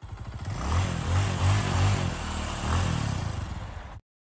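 Motorcycle engine revving, its pitch rising and falling a few times with the loudest revs a little after one second and near three seconds. The sound starts and cuts off abruptly.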